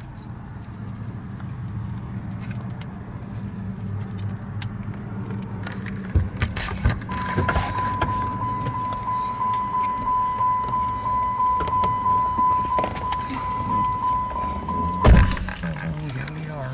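Car door-open warning chime, a steady repeating beep about one and a half times a second that starts about seven seconds in and stops when the door is slammed shut near the end with a loud thump. Before it there is a low steady hum and some handling clatter in the cabin.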